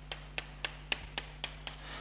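Chalk striking a chalkboard in a quick, even series of about eight short strokes, about four a second, as a row of hatch marks is drawn.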